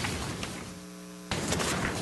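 Steady electrical mains hum in the meeting's audio feed. Partway through it is joined by a burst of rustling noise.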